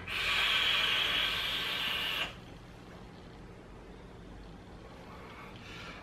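A person blowing out a big hit of e-cigarette vapour: a breathy hiss lasting about two seconds, then quiet room tone.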